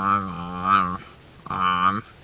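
A man's voice drawing out a wordless, level-pitched hesitation sound while thinking, held for about a second, then repeated briefly near the end.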